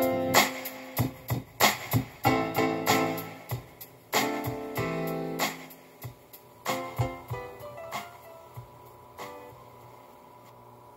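Electric-piano chords and single notes played on a keyboard synthesizer, each struck note ringing and fading; the playing thins out and grows quiet over the last few seconds.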